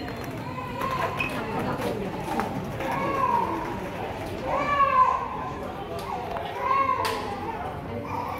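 Crowd chatter with children's voices, three louder high-pitched children's calls standing out, the middle one loudest.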